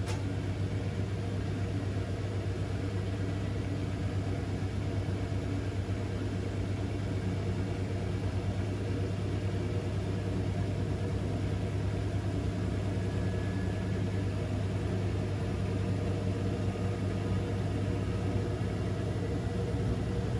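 Bosch front-loading washing machine's drum motor running at a steady speed, a constant low hum, as the drum turns a single wool jumper in a long load-distribution rotation before the spin.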